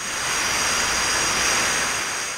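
Steady machinery noise of a hot-sauce bottling floor: an even hiss carrying a couple of thin high whines. It swells up in the first half second and then holds level.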